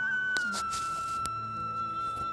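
Background music: a single high melodic note steps up briefly and is then held steadily, flute-like, with a couple of faint clicks under it.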